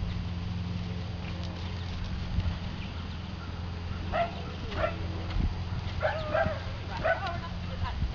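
A dog barking several short times in the second half, over a steady low hum.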